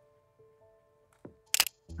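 Sony ZV-E10 mirrorless camera's shutter firing once near the end, a sharp double click as a portrait frame is taken, over soft background music.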